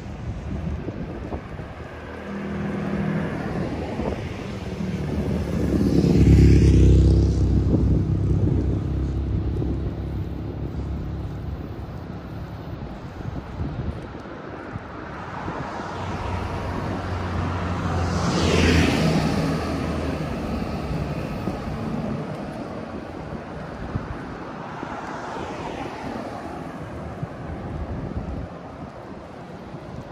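Cars driving past on the road one at a time, each swelling up and fading away: the loudest about six seconds in, another near nineteen seconds, and a fainter one around twenty-five seconds.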